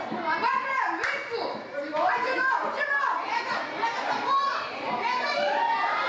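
Young footballers' voices shouting and calling out during play, several overlapping across the pitch, with a single sharp knock about a second in.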